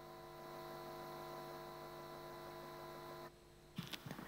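Faint steady electrical buzzing hum of several even tones from a remote video-call audio line that carries no voice, the sign of a failed connection. It cuts off abruptly a little over three seconds in.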